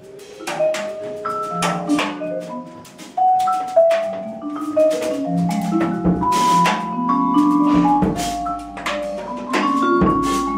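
Live small jazz band playing: saxophones, clarinet and brass hold and step through notes over vibraphone, double bass and drums, with frequent sharp percussion hits.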